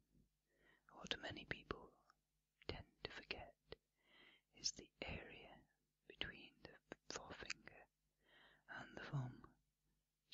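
Close-miked, unintelligible whispering in short bursts, with sharp clicks scattered among the phrases.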